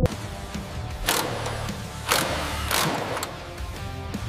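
Three short bursts of noise from a cordless impact wrench tightening a fitting, about a second, two seconds and two and three-quarter seconds in, over background music with a steady low drone.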